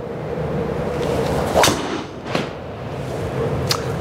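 A golf driver swung and striking the ball: a rising swish ends in a sharp crack at impact about a second and a half in. A second, softer knock follows about two-thirds of a second later. A steady room hum runs underneath.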